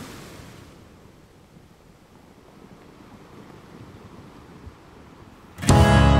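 Faint steady hiss of sea surf and wind on an old film soundtrack, easing off a little. Near the end, loud music with plucked strings and a beat cuts in suddenly.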